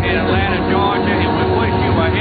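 A person's voice, talking without clear words, over a steady low hum.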